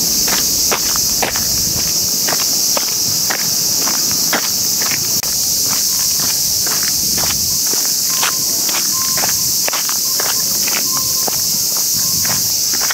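A loud, steady, high-pitched chorus of insects with footsteps walking along a paved path, about two steps a second.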